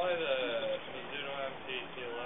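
Speech: a voice talking in two short phrases with a brief gap between them.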